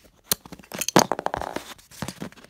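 Small plastic clicks and scrapes of a LEGO minifigure's hairpiece and head being gripped, pulled and turned by fingers close to the microphone. The clicks come irregularly and are thickest and loudest around the middle.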